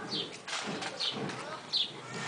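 A bird chirping: short, falling high-pitched calls repeated roughly every half second, with faint voices underneath.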